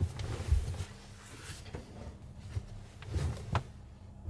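Handling and movement noise of a person settling at a campervan table: scattered soft thumps and rustling, with a sharp click about a second and a half in and another near the end.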